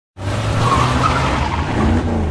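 A car engine running with tyres squealing, starting suddenly a fraction of a second in.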